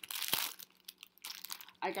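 Rustling of packaging as a piece of cross-stitch fabric is handled: a noisy burst with a sharp click in the first half second, then a few faint clicks.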